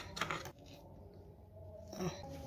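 A short metallic clatter of kitchen scissors being set down, a few quick clicks in the first half second, then faint handling of the food.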